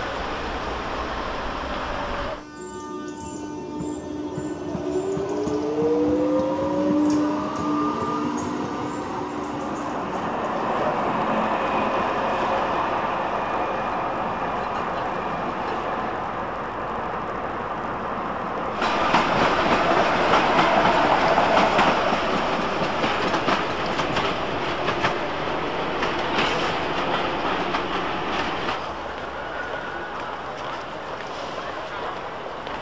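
Manchester Metrolink T68 trams in service: a traction motor whine rises in pitch as a tram pulls away, then steady wheel-on-rail running noise, which grows louder about two-thirds of the way through.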